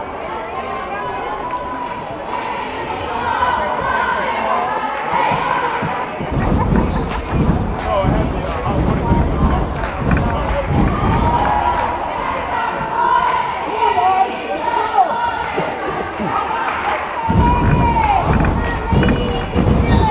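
Crowd chatter and shouting voices echoing in a gymnasium, with dull low thuds through stretches of the second half.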